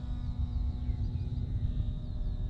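Uneven low wind rumble on the microphone, with a faint steady hum and a few faint high chirps.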